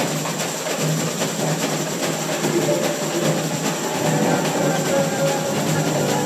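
Samba school bateria playing a live samba groove: a dense, steady pattern of drums and hand percussion, with a sung melody and string accompaniment coming up over it in the second half.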